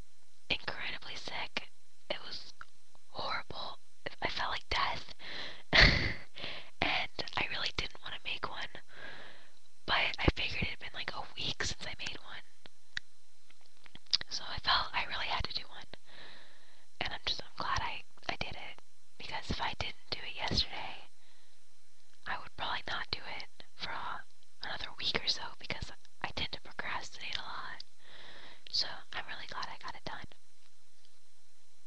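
A person whispering in short phrases broken by pauses, with one loud thump on the microphone about six seconds in.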